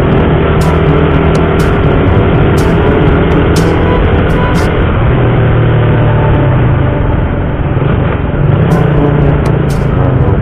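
Suzuki motorcycle engine running at low road speed, mixed with background music.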